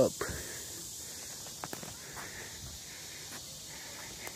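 Footsteps on a wooden boardwalk: a few faint, irregular knocks over a steady hiss.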